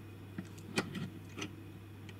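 A few faint, sharp metal clicks from the spring-loaded jaw of a Stanley Fatmax 97-546 ratcheting adjustable spanner as it is worked against a nut, over a steady low hum.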